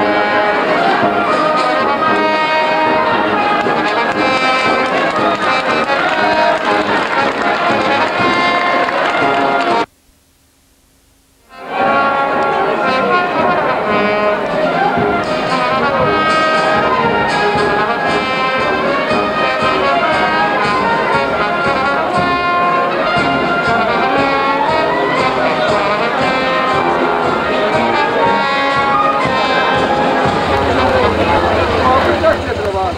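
Brass band playing processional music, with trombones and trumpets carrying sustained melody lines. The sound cuts out to near silence for under two seconds about ten seconds in, then the music resumes.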